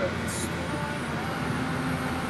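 Steady road noise heard from inside a moving vehicle: a low rumble of engine and tyres.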